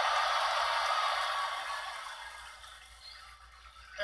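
Arena crowd cheering, heard through a television's speaker, loudest at first and dying away over about three seconds.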